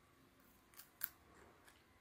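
Near silence, broken by two faint crackles about a second in: the backing being peeled off the adhesive dressing of a subcutaneous infusion device.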